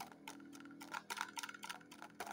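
Quick, irregular light clicks and taps of fingers handling a bar of soap and its cardboard box.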